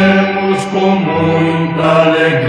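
Music: a sung Christian hymn, voices holding long notes that shift pitch a couple of times.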